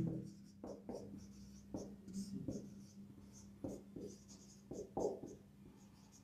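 Marker pen on a whiteboard: about a dozen short, irregular squeaks and scratches as handwriting is put down stroke by stroke.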